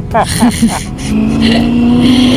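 Motorcycle engine running under way, a steady note that comes up about a second in and rises slightly in pitch.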